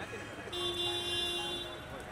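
A vehicle horn sounding once, a steady note held for just over a second, over street traffic and voices.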